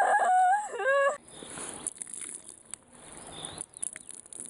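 An elderly woman wailing in staged crying: long drawn-out notes that rise, hold and break off over about the first second, then fade into faint background hiss.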